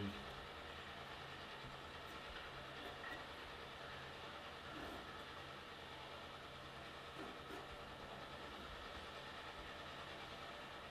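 Quiet steady background hum and hiss, with a few faint soft scratches of a mechanical pencil sketching on paper.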